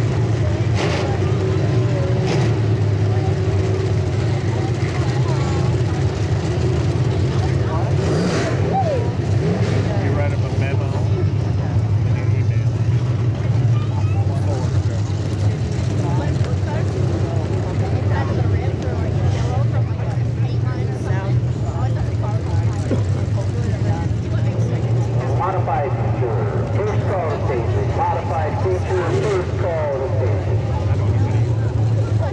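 Stock car engines running at low speed, a steady drone, with people's voices faintly over it.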